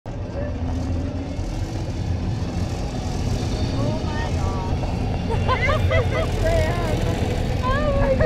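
Open cable car running out along its cable, a steady low rumble throughout, with excited voices over it from about four seconds in.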